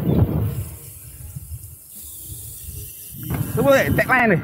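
Wind buffeting the microphone of a camera on a moving bicycle, loudest in the first half-second and then settling to a low flutter. A voice comes in near the end.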